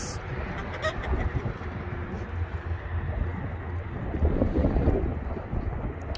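Low, uneven outdoor rumble with no clear single source, and a few faint clicks about a second in.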